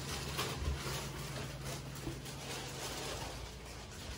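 Faint rubbing and rustling from a disinfectant wipe being worked over hard surfaces, over a low steady hum.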